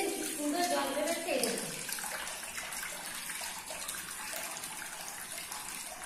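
Water pouring from a hole in a green coconut into a steel bowl: a steady splashing trickle, with a woman's voice over its first second and a half.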